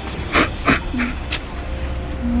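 A young woman crying: four short, sharp sobbing breaths and sniffs in quick succession, about a third of a second apart.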